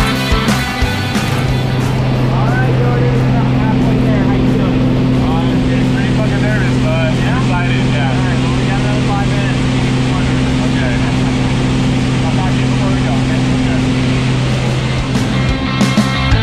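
A light aircraft's engine and propeller drone steadily at one pitch inside the cabin, with voices shouting over it. Rock music cuts out about a second in and comes back near the end.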